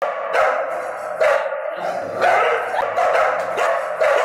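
A dog barking repeatedly, loud and sharp, about one bark a second.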